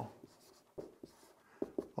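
Dry-erase marker writing on a whiteboard: a few short, faint scratchy strokes, most of them in the second half.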